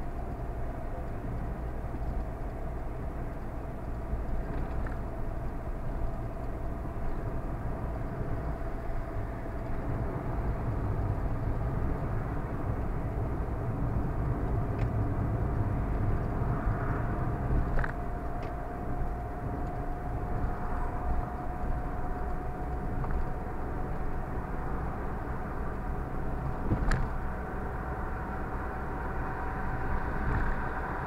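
A car on the move heard from inside the cabin: a steady low rumble of road and engine noise with a faint whine that rises slowly in pitch. A few short clicks stand out, the loudest near the end.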